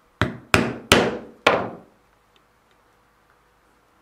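A mallet striking a small stitching chisel four times, driving its prongs through glued layers of leather to punch stitching holes. The strikes come quickly in the first two seconds, the last a little apart from the others, and each one rings briefly.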